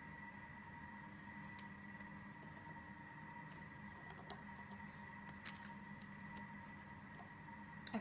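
Quiet room tone with a steady faint high whine, broken by a few soft taps as raw zucchini slices are laid by hand onto parchment paper in a baking tray.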